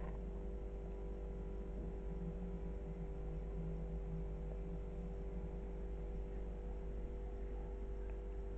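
Steady background hum with a few faint unchanging tones, with no clear sound from the kitten's play with the ribbon.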